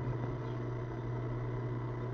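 A steady low hum with a faint hiss.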